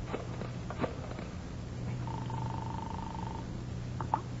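Telephone sound effect: a few sharp clicks as the phone is dialed, then one buzzing ring tone heard through the receiver about halfway in, lasting over a second. A steady low hum from the old recording runs underneath.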